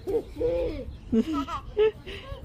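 Young children's voices: a quick string of about six short, high vocal calls, each rising and falling in pitch, in playful non-word squeals and coos.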